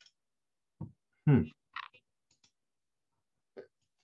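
A man's short "hmm" over a video-call connection, with a few brief faint ticks around it and dead silence between, as the call's audio cuts out whenever no one is making a sound.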